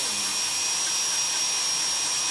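Podiatry rotary nail drill with a conical abrasive bit running at a steady high whine as it grinds down a thickened fungal toenail.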